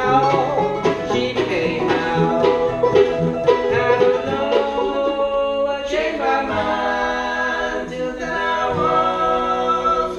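Acoustic bluegrass string band playing: acoustic guitar, fiddle and plucked strings with singing. About six seconds in, the busy picking thins out under long held notes of vocal harmony.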